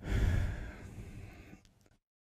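A man sighing, one long exhale close on a microphone, starting suddenly and fading out over about a second and a half.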